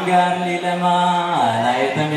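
Male voices chanting a menzuma, an Ethiopian Islamic devotional song, in long held notes. The pitch drops lower about one and a half seconds in.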